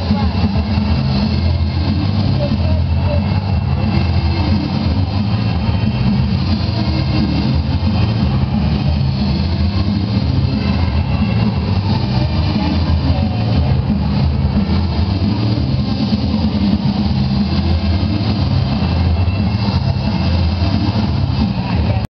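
Steady low rumble of a busy sports hall's background noise, with indistinct voices in it and no clear individual sounds standing out.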